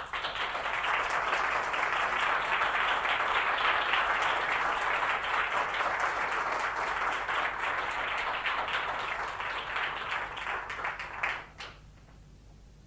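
Audience applause after a piano-accompanied song, breaking out at once and stopping about half a second before the end.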